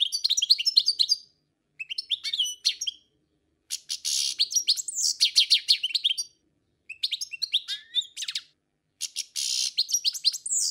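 Small bird chirping and twittering: quick runs of high, rapid chirps in about five bursts, separated by short gaps of dead silence.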